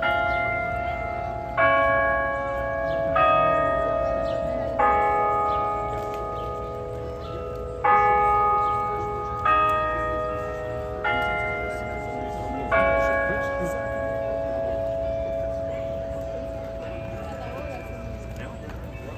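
Bells of the Delacorte Clock chiming a slow tune on the hour: eight struck notes of different pitch, about a second and a half apart in two groups of four with a pause between, each note ringing on and the last one fading out.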